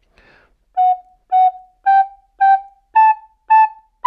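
Plastic soprano recorder playing six short tongued notes in pairs, F-sharp, F-sharp, G, G, A, A, stepping up the scale about two notes a second.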